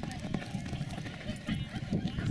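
Hoofbeats of a paint horse galloping on arena dirt into a barrel turn, heard as irregular low thuds, with indistinct voices over them.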